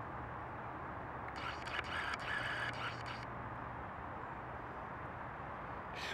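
Rustling and crackling of fallen willow branches and leaves for about two seconds, starting a second in, as someone moves through the debris. Under it is a steady outdoor background with a faint low hum.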